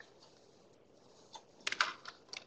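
Faint room tone, then a quick cluster of sharp clicks and knocks about one and a half seconds in.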